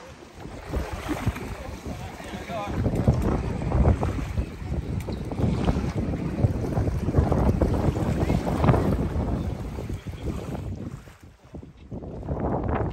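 Wind buffeting the microphone in gusts, setting in abruptly about three seconds in and dropping away briefly near the end.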